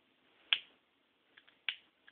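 A hand-held lighter being struck: one sharp click about half a second in and another near the end, with a couple of faint ticks between.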